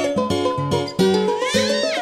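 Instrumental lullaby music of plucked notes over a regular bass line, with no singing. Near the end a short cry rises and then falls in pitch over the music.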